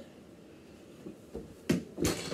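A quiet room, then a faint knock and a single sharp thump near the end as a boy runs and jumps to dunk a small ball into a mini hoop hanging from a curtain rail.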